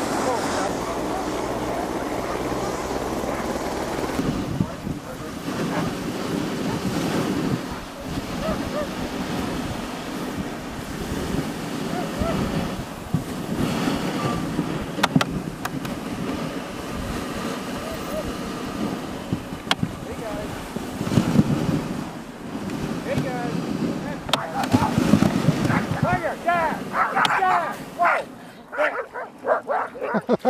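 Dog sled gliding over glacier snow, its runners hissing steadily, with wind on the microphone.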